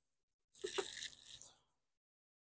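A removed turbocharger being handled: two quick metallic knocks about half a second in, followed by a scrape lasting about a second.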